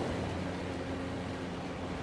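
Zodiac inflatable boat's outboard motor running steadily under a constant rush of wind and water.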